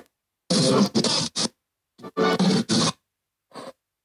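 Spirit Box Lite ghost-box app sweeping and putting out choppy, garbled fragments of voice-like sound and static, each cut off abruptly into dead silence: two chunks of about a second each and a short blip near the end.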